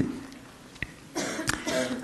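A short throat-clearing cough about halfway through, after a moment of quiet room tone.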